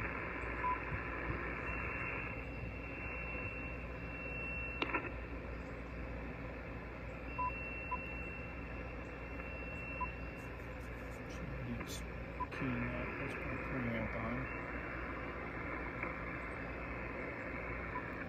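Steady static hiss from an Icom IC-705 HF transceiver's speaker as it listens on an open band with noise reduction on, with several short single beeps from its touchscreen as function keys are tapped.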